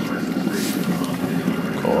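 Stainless-steel electric kettle heating water, a steady low rumble with hiss as it nears the boil, not yet clicked off. A voice calls "go" near the end.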